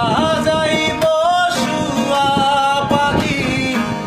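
A man singing while strumming an acoustic guitar. His voice holds and bends long notes over steady strummed chords.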